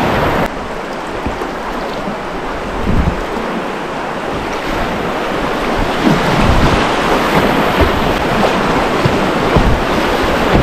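Rushing, churning water of a shallow river rapid heard close up from a kayak, with wind buffeting the microphone. The sound drops suddenly just after the start and builds again from about six seconds in.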